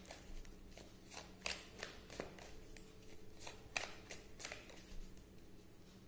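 A tarot deck being shuffled by hand: a run of irregular quick card riffles and slaps that dies away about five seconds in.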